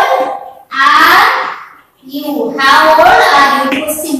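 Speech: a high-pitched voice speaking aloud in three loud phrases, the last running on past the end.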